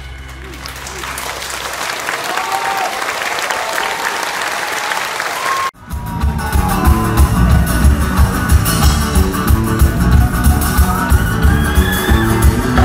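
Audience applause rising over the last held chord of a song, then, after an abrupt cut about six seconds in, a live band playing the next song with electric guitar, bass and drum kit in a steady beat.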